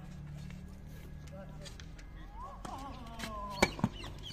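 A tennis racket striking the ball on a forehand return: one sharp pop about three and a half seconds in, followed at once by a smaller knock, over a steady low hum.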